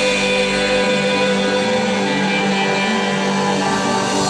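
Live jam band playing an instrumental passage, with electric and acoustic guitars and keyboard over held notes, at a steady level.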